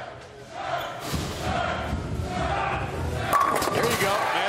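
Bowling ball rolling down the wooden lane with a low rumble, then crashing into the pins about three and a half seconds in, with crowd voices in the hall.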